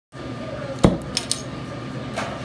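Metallic clinks as a gas torch is lit: one loud clank about a second in, then two quick sharp clicks.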